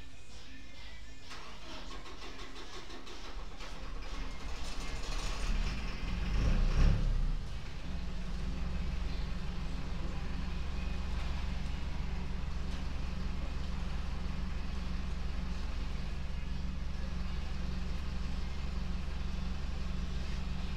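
An air compressor's motor kicks on about seven seconds in with a brief loud surge, then runs with a steady low hum. Before that there is a rising hiss.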